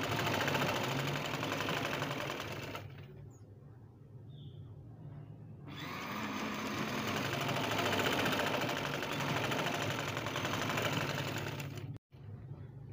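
Sewing machine running steadily as it stitches lace onto a sleeve, pausing for about three seconds a few seconds in, then stitching again.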